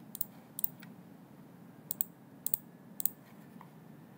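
Computer mouse clicks: about five quick double-clicks spread over a few seconds, over a faint steady background.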